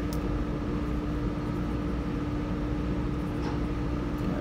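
Steady room air-conditioning hum with a constant low tone and a low rumble underneath.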